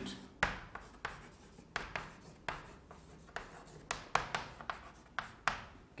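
Chalk writing on a blackboard: a run of short taps and scrapes, two or three a second, as words are written by hand.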